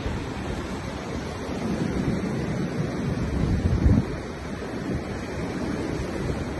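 Ocean surf breaking on a beach, with wind buffeting the phone's microphone in low gusts.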